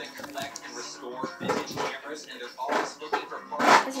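Indistinct voices at a moderate level, with a louder voice near the end.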